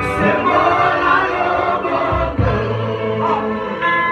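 Live gospel worship music: a male lead singer with backing singers over keyboard accompaniment, with sustained sung notes and a steady low bass line.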